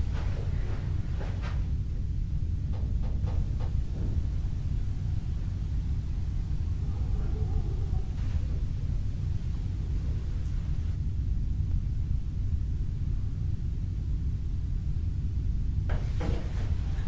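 A steady low rumble, with a few faint clicks and knocks in the first four seconds.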